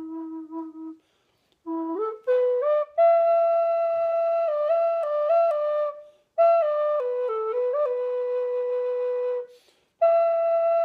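Handmade recycled-pine Native American style flute played in slow phrases with breath pauses between them. A low held note ends about a second in. After a short gap a phrase rises to a long high note with brief grace-note dips, and after another pause a phrase steps down to a long lower note that stops just before the end.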